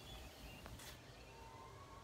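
Near silence: faint outdoor background with a low rumble, and a faint thin steady tone in the second half.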